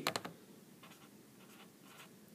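Pen writing on paper: a few faint scratching strokes, with a couple of short clicks right at the start.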